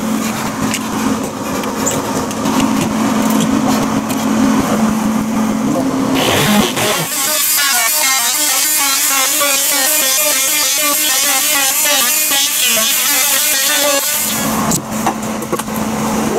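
An electric power saw running while cutting out the plywood soffit panel over a bee hive. A steady motor hum gives way, about six seconds in, to a louder, hissier cutting sound whose pitch wavers as the blade bites. The steady hum returns near the end.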